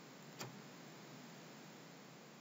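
Near silence with room hiss, broken once about half a second in by a single short click of a computer mouse button.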